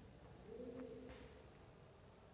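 Faint pigeon cooing: one low call about half a second in, with light scratches of chalk on a blackboard.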